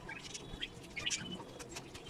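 Budgerigars in the nest: short, scattered squeaky chirps, a few each second.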